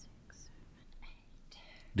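A quiet pause in a hearing room with faint whispering, and a man's voice starting right at the end.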